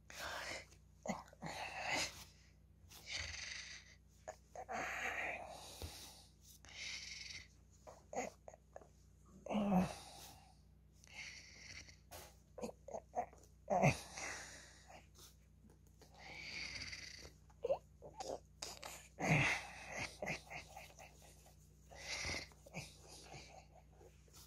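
A beagle puppy play-biting a hand, making irregular short breathy snorts and grunts; a few deeper grunts drop in pitch.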